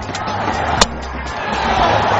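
Cricket ground crowd noise with one sharp crack a little under halfway through, bat striking ball. The crowd noise rises near the end.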